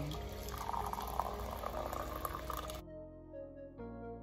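Water poured from a jug into a mug, a steady splashing fill that cuts off suddenly near the end, leaving background music.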